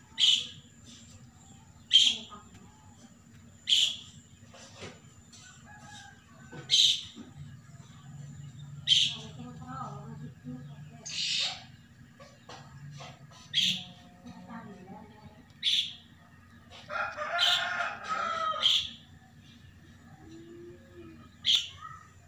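Outdoor birdsong: a bird repeats a short, high chirp about every two seconds, and a rooster crows once about seventeen seconds in.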